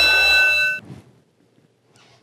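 A struck bell ringing on with a few steady high tones, cut off abruptly less than a second in, then near quiet.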